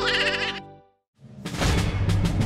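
A quavering, high-pitched cartoon sound effect over background music fades out about half a second in. After a brief gap of silence, the music comes back with drum beats.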